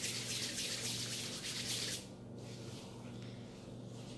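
Palms rubbing together with beard balm between them: a soft swishing hiss that stops abruptly about two seconds in, leaving only a faint rustle as the hands move to the beard.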